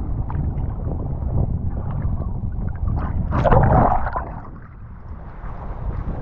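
Water rushing and splashing against a low-mounted action camera as a kitesurfer rides, over steady low wind and water noise on the microphone; one louder splash about three and a half seconds in.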